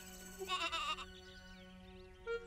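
A sheep bleat: one short, wavering call about half a second in, over soft background music with a held low note.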